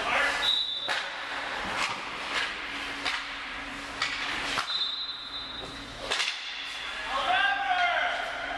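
Ice hockey practice sounds in an indoor rink: a string of sharp clacks from sticks and pucks hitting pads and ice. Two short high squeals come about half a second and five seconds in, and voices near the end.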